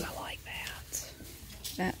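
Plastic clothes hangers clicking against each other and against a metal rack as garments are pushed along, under a soft whispering voice.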